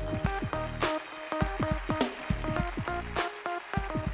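Recorded electronic-style music: a melody of short stepped synthesizer notes over low notes that drop in pitch, with frequent percussion hits.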